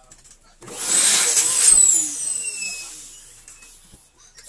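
Electric balloon pump blowing air into a latex balloon: the motor starts about half a second in, runs loud for about a second and a half, then winds down, its high whine falling in pitch as it slows.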